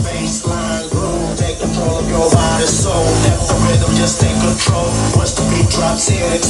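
Electronic music with a heavy bass line and a steady beat of about two strokes a second, played loud at maximum volume through a Sonos wireless speaker system with the Sonos SUB subwoofer adding the low end.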